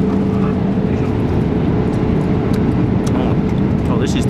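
Steady low roar of a jet airliner cabin in flight, with a faint steady hum running through it.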